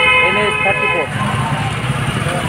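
A vehicle horn blares steadily for about a second at the start, over continuous street traffic with voices around.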